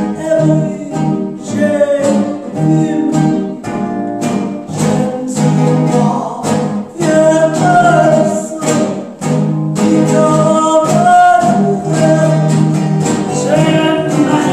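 Live gypsy-swing music: a woman singing over a rhythmically strummed acoustic guitar and an archtop electric guitar.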